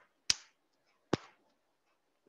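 Two short, sharp clicks close to the microphone, the first about a third of a second in and the second a little under a second later.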